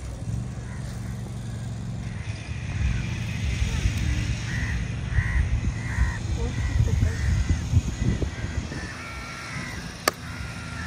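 Crows cawing, a run of short caws in the second half, over a steady low rumble.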